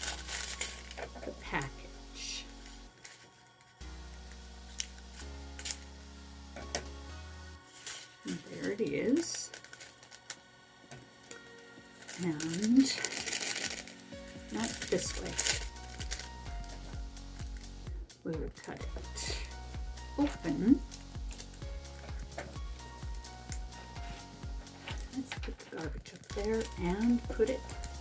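Background music with a steady bass line, over which small plastic packets of diamond-painting drills crinkle and are snipped open at times.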